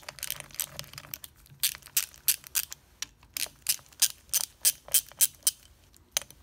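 Ratchet wrench clicking as it loosens the steering box's top-cover bolts a little at a time against spring pressure under the cover. It gives a run of sharp clicks, about four a second, from about a second and a half in until near the end.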